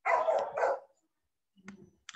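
A dog barking several times in quick succession during the first second, heard over a video-call line.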